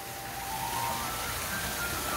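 Water from a wall waterfall pouring down a stone wall into a pool: a steady rain-like splashing that grows a little louder. Faint music with held notes plays underneath.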